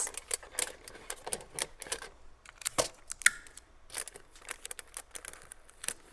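Aluminium foil crinkling and sticky tape being pressed down by hand on a cardboard box: a run of small, irregular crackles and clicks.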